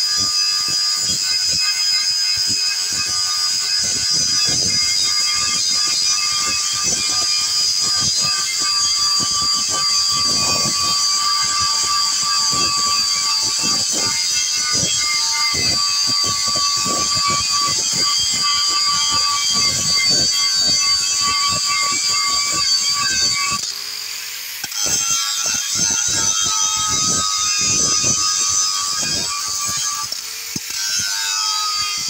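Electric angle grinder running at full speed with its disc grinding down a weld bead on a steel chassis rail: a steady high whine over a continuous scratchy rasp of the disc on the metal. Near the end it eases off for about a second, then bites in again.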